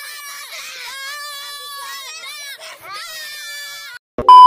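A child's high-pitched, wailing, crying-like voice, wavering in pitch and drawn out in three long stretches with short breaks between them.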